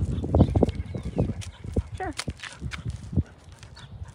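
Footsteps on an asphalt path as a person and a leashed dog walk along, a string of irregular steps that are loudest in the first second and fade out after about three seconds.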